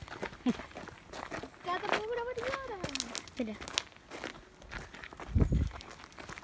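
Footsteps on a gravel path, a run of short crunching steps throughout, with a voice rising and falling for about a second and a half around two seconds in. A loud low thump near the end.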